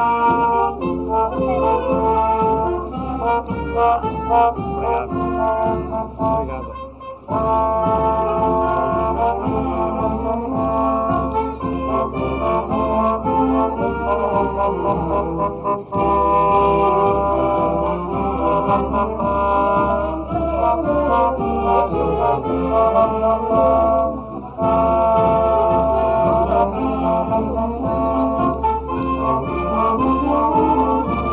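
A filarmónica, a wind band of trumpets, trombones, saxophones, euphonium and sousaphone, playing a tune together. The music breaks off briefly about 7, 16 and 24 seconds in.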